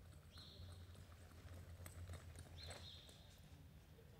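Faint hoofbeats of a horse moving on soft arena dirt, over a steady low hum. Two short, high, thin whistling tones sound, one just after the start and one about two and a half seconds in.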